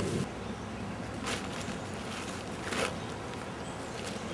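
Two brief rustles, about a second and a half apart, over a steady outdoor hiss.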